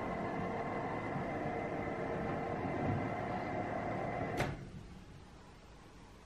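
A household appliance humming with several steady whining tones, then switching off with a sharp click about four and a half seconds in, leaving quiet room tone.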